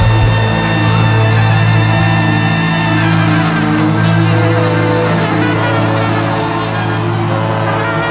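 A live rock band playing an instrumental jam, a loud low bass note held steadily under sustained higher tones.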